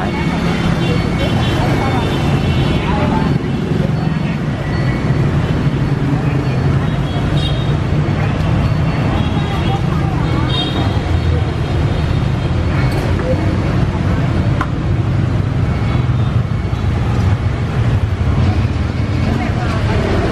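Steady street traffic noise from passing motor vehicles, a continuous low rumble, with people talking in the background.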